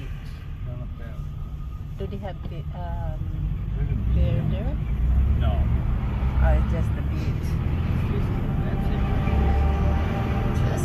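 Low rumble of a car's engine and road noise heard from inside the cabin. It grows louder about four seconds in as the car moves off through traffic, with faint voices in the first half.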